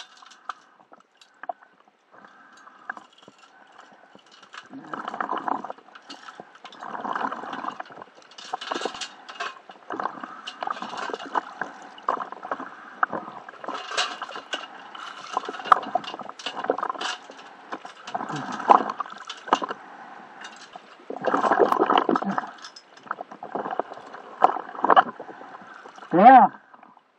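Water sloshing and gurgling around a diver's hands and gear in shallow water, with scrapes and small knocks, coming in irregular bursts.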